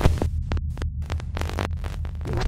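Electronic logo sting: a deep, steady bass drone with rapid glitchy static clicks over it.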